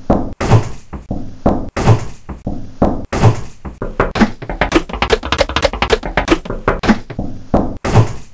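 Chopped-up remix beat built from cut sound clips: a heavy thump repeats about every 1.2 seconds. From about three and a half to seven seconds in, it breaks into a fast stutter of short clipped snippets.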